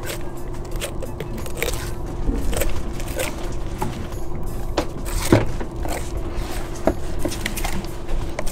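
Fillet knife scraping and ticking over the rib bones and along the backbone of a red snapper as the fillet is cut free, in irregular sharp clicks with the loudest about five seconds in. A steady hum and a low rumble run underneath.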